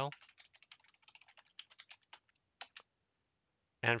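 Computer keyboard typing: a quick run of keystrokes for nearly three seconds as a terminal command is entered, then the typing stops.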